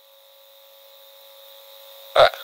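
Faint steady electrical hum with a light hiss, slowly growing louder.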